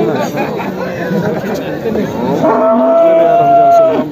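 One of the young cattle moos once, a single long, steady call that starts about two and a half seconds in and stops just before the end, over the chatter of a crowd.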